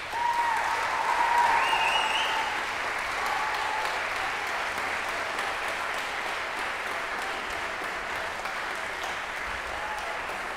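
Audience applause breaking out all at once, with a few shouted cheers in the first two seconds, then steady clapping that eases slightly.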